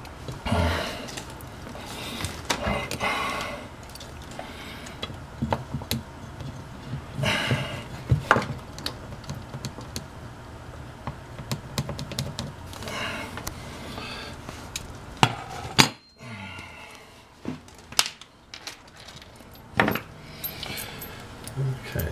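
Scattered light clicks, taps and scraping from a metal fire-extinguisher mounting bracket being handled against a wall while its screw holes are marked in pencil.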